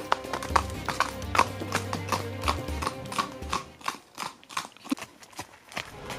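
A horse's hooves clip-clopping on a road at a trot, about three beats a second, with background music underneath.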